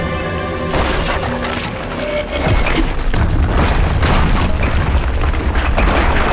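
Dramatic film music over heavy booms and crashes of tumbling rocks and debris, with a deep rumble underneath that grows heavier about halfway through.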